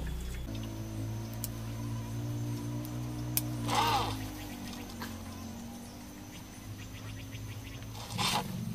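Bonsai scissors making a few faint, sharp snips on a ficus branch over a steady low hum. A short animal call sounds about four seconds in.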